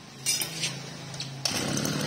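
Mitsubishi TL261 26 cc two-stroke brush-cutter engine idling quietly, with a few light clicks. About one and a half seconds in it turns suddenly louder and rougher as it picks up speed.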